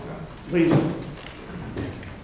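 Men talking informally away from the microphone, with a brief louder voice or knock about half a second in.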